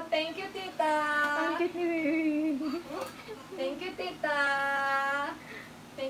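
A sing-song voice holding two long, steady notes of about a second each, the first about a second in and the second past four seconds in, with short vocal sounds between.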